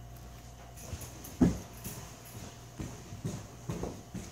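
A handful of irregular, hollow knocks and thuds, the loudest about a second and a half in, over a low steady room hum.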